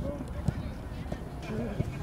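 Outdoor football match ambience: a steady rumble of wind on the microphone, faint distant shouts from players and a couple of short thuds, about half a second in and near the end.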